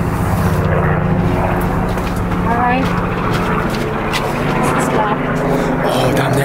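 A steady low mechanical drone, like an engine or motor running without change in pitch, with a faint voice in the background.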